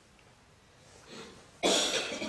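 A person coughs once, a sudden loud cough near the end after a faint throat sound.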